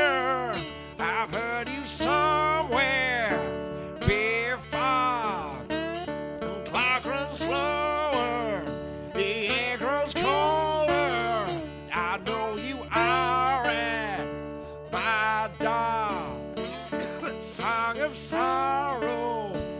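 A man singing a slow dark folk blues song in drawn-out phrases, accompanying himself on acoustic guitar.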